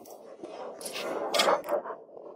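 Loose stones and gravel crunching and scraping as rocks are shifted by hand and underfoot, with a few short, sharper scrapes in the second half.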